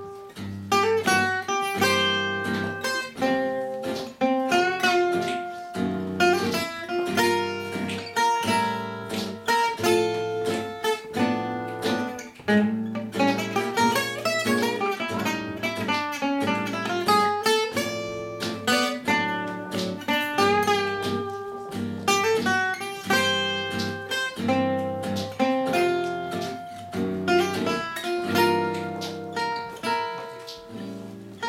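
Gypsy jazz (manouche) played on acoustic guitars: a Selmer-style oval-hole guitar plays quick single-note runs and chords, over a second guitar's rhythm accompaniment.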